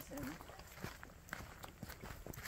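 Footsteps on a dirt hiking trail strewn with dry leaves, a series of light crunching steps, the firmest about every half second.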